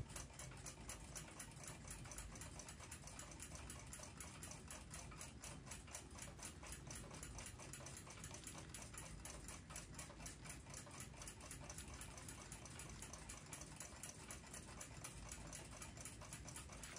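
A clock ticking faintly, a fast, steady run of even ticks.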